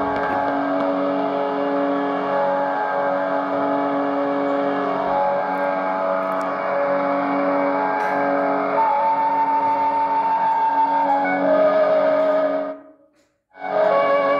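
Philips two-band portable radio playing instrumental music with long held notes through its speaker. Near the end the sound cuts off abruptly, comes back for about a second, and cuts off again as its lower front knob is worked.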